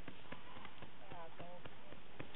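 A few soft, short knocks and clicks, with a brief murmured voice about a second in.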